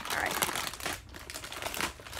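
Crinkling of a plastic candy wrapper, a package of Twizzlers being handled and opened to get a piece out, in a quick irregular run of rustles.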